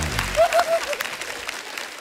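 Studio applause and hand-clapping that dies away over the two seconds, with a brief voiced sound about half a second in.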